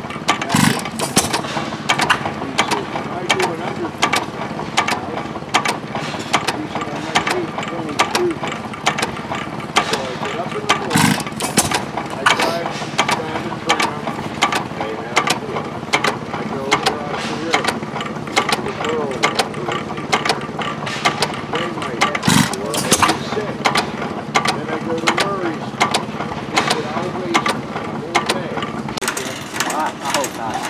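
Galloway Masterpiece Six hit-and-miss gas engine running, clicking evenly about two to three times a second. A louder beat comes about every eleven seconds.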